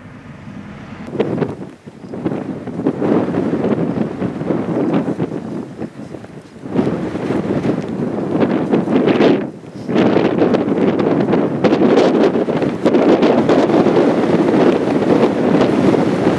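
Wind gusting over the microphone in uneven rushes, with brief lulls about two, six and nine and a half seconds in, then louder and steadier through the second half.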